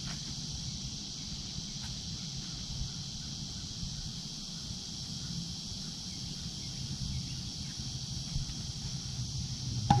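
Steady high-pitched insect buzz from the trees over a low outdoor rumble, with one short sharp snap just before the end as the rubber-band-launched toy rocket is let go.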